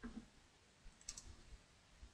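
Near silence, with a faint double click of a computer mouse about a second in and a soft low thump at the very start.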